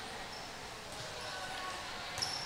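Quiet gymnasium room tone with a faint thud of a volleyball being served about a second in.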